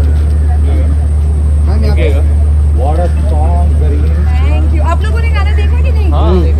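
People talking in the background over a loud, steady low hum; the voices grow clearer from about halfway through.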